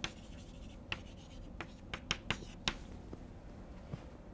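Chalk on a blackboard while a line is written: a string of short, sharp taps and scratches over the first three seconds or so, then quiet strokes fading out.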